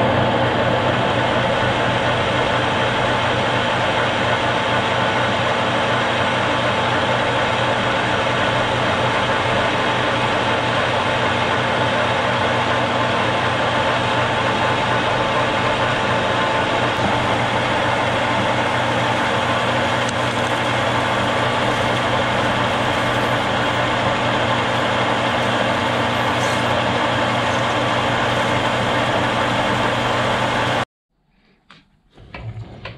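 Metal lathe running steadily while turning a 4140 steel bar down to a valve stem. It is an even mechanical hum with several steady tones held throughout, over the noise of the cut.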